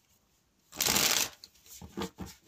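A deck of tarot cards shuffled once in a quick burst of about half a second, about a second in, followed by a few faint short sounds.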